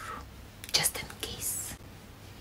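A woman whispering a few breathy words in two short bursts.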